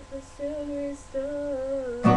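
Young female voice singing alone, without the guitar: a few held notes, broken off twice for a moment.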